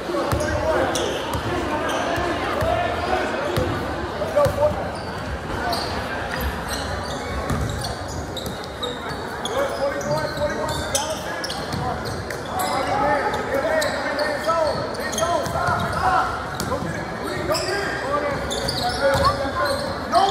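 Basketball game in a gymnasium: a basketball bouncing on the hardwood floor amid crowd voices, the sound echoing in the large hall.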